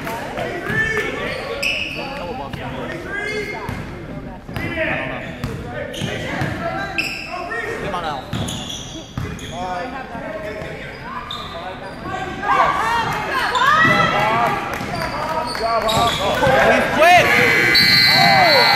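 Basketball game sounds echoing in a large gym: a ball bouncing, sneakers squeaking on the hardwood floor and indistinct voices. Near the end a referee's whistle blows a long, steady note as play is stopped.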